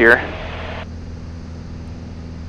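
Piper Cherokee 180's four-cylinder Lycoming engine and propeller running steadily in flight, heard as a cockpit drone through the intercom feed. A layer of hiss over the drone cuts off a little under a second in.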